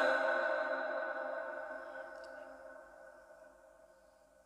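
Echo tail of a chanted Qur'an recitation: the last held note of the voice hangs on as a steady ringing tone and fades away over about three seconds.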